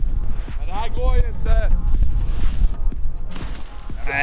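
A person whoops twice, short rising-and-falling shouts about a second in, cheering on a skier dropping in toward a small snow jump. A steady low rumble runs underneath.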